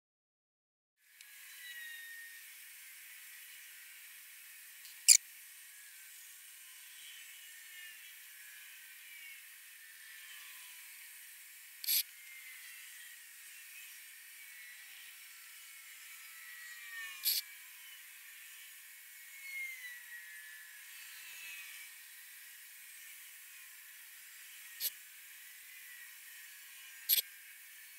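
A faint steady hiss with thin, high wavering chirps, broken by four sharp clicks several seconds apart, the loudest about five seconds in.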